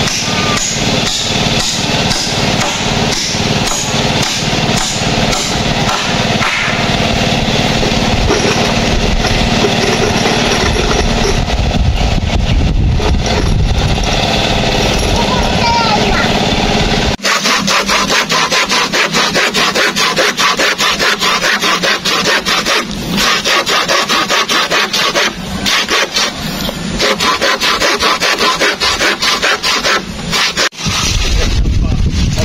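Lumber being sawn by hand: a fast, even run of saw strokes through wood, starting abruptly past the middle. Before that, a dense steady mix of work sounds with a regular knock.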